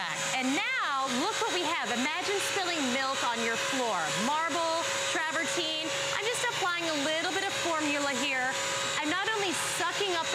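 Bissell CrossWave multi-surface wet/dry vacuum running, its motor giving a steady whine.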